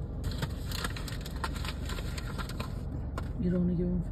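Steady low car rumble with many small clicks and rattles. Near the end a person briefly hums a short steady note.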